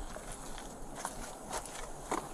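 Faint footsteps and shuffling with a few soft knocks, heard through a police body camera's microphone.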